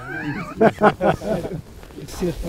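Laughter: a wavering voiced sound, then three or four loud laughing pulses about a quarter second apart.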